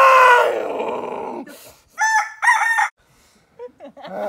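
A loud, drawn-out human yell of pain, falling in pitch, as a wax strip is ripped off on the count, then two short high shrieks about two seconds in.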